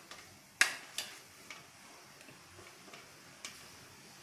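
A metal spoon clinking against a stainless steel bowl while stirring chopped pickle: a few sharp clinks, the two loudest within the first second.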